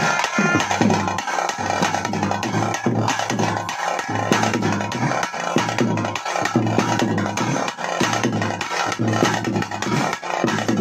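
Traditional drum ensemble playing a fast, dense rhythm of strokes.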